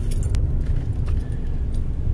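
Low, steady rumble of a car moving slowly, heard from inside the cabin, with one sharp click about a third of a second in.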